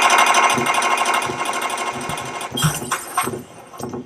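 Rapid rattling burst like machine-gun fire, a sound effect in a recorded stage drama. It fades out about two and a half seconds in, leaving a few faint knocks.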